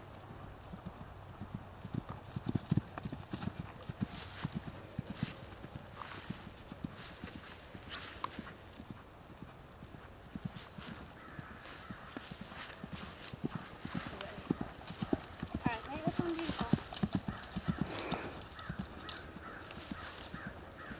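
Hoofbeats of a cantering horse on grass, a run of dull thuds. In the second half a pitched vocal sound rises over the hoofbeats.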